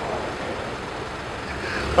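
Steady background noise of a city street, with a low hum coming in near the end.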